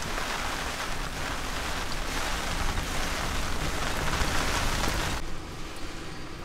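Steady hiss of a storm's wind and rain, with a low rumble of wind buffeting the microphone. It stops suddenly about five seconds in, leaving a quieter low hum.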